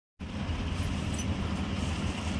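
Steady low rumble with a hiss over it, starting a moment in and holding even throughout, with no distinct event.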